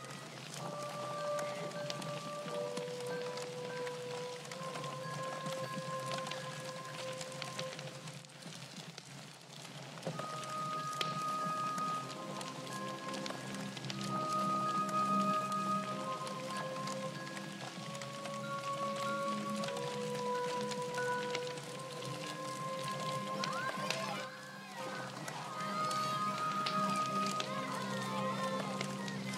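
Horror film score: a slow melody of held notes over a steady low drone, with a hiss of noise underneath. Near the end, wavering cries come in over the music.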